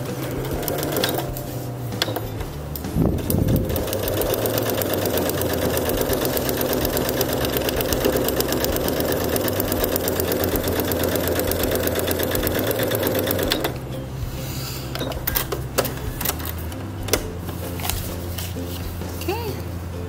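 Computerized electric sewing machine stitching through a paper foundation pattern and fabric: a few short runs in the first seconds, then a steady, even run of fast stitching for about ten seconds that stops about fourteen seconds in, followed by light handling clicks.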